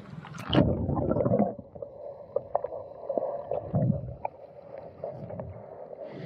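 Water splashing around a submerged camera's microphone about half a second in, then the muffled sound of moving water heard underwater, with scattered faint clicks and a dull bump a little before four seconds.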